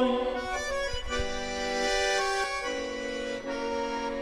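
Piano accordion playing alone in the closing bars of a hymn accompaniment: sustained chords that change a few times.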